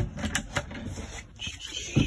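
Handling noise from a phone being carried and swung around: a few light knocks and some rustling.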